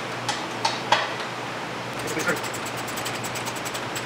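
Hand ratchet wrench clicking rapidly, about ten clicks a second, from about halfway in, as a bolt is run in on the motorcycle. Before that, a few separate metal clinks of the tool on the bolt.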